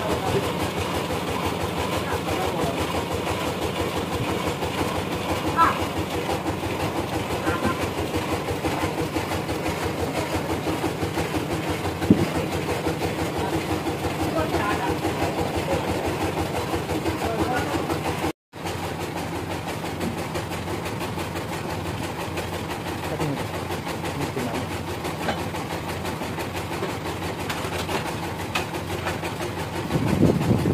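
Band sawmill machinery running with a steady drone made of several held tones, and a single sharp knock about 12 seconds in.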